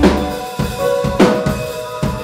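Live rock drum kit: two heavy hits with crashing cymbals about a second apart, ringing over sustained chords from the band.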